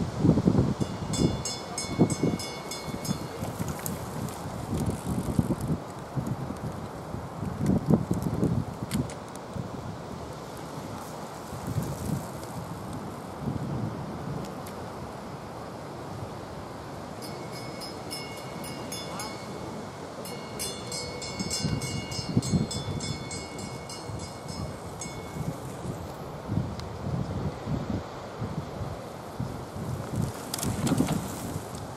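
Wind buffeting the microphone in uneven gusts, with bicycle freewheels ticking fast as cyclocross riders coast past on grass, once early and again in a longer spell past the middle.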